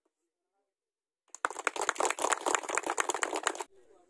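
Silence, then about a second and a half in, a group of people clapping their hands for about two seconds.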